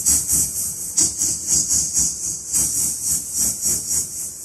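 Rhythmic hissing "sss" sounds, about three a second, voiced into a wireless handheld microphone and heard through the karaoke speakers: a test of the mic's treble and sibilance.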